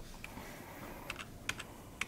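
Typing on a computer keyboard: a few scattered, irregular keystrokes, the sharpest about one and a half seconds in.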